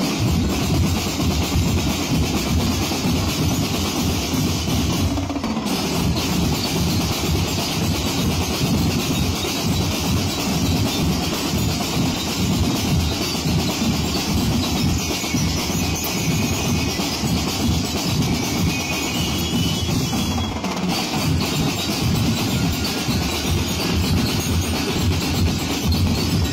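Ati-Atihan street drum band playing: many bass drums and snare drums keeping up a dense, steady beat without a break.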